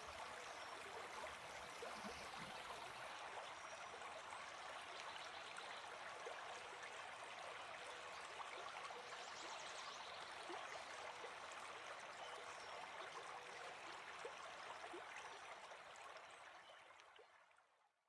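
Faint, steady babbling of a stream, a background water ambience that fades out near the end.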